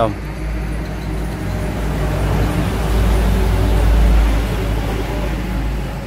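Low engine rumble and road noise of a motor vehicle, building to a peak about four seconds in and then easing off.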